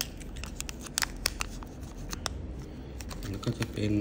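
Light clicks and scratching of small objects being handled close to the microphone, over a low steady hum. A man starts speaking Thai near the end.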